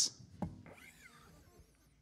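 A pause in a man's talk: quiet room sound, with a faint short knock about half a second in.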